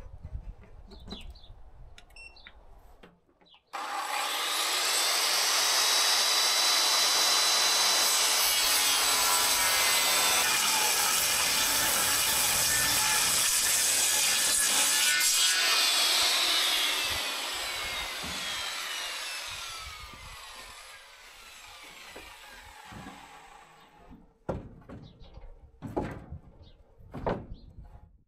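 Corded circular saw starting abruptly about four seconds in and cutting along a wooden slab for about twelve seconds. The motor then winds down with a falling whine. A few short knocks come near the end.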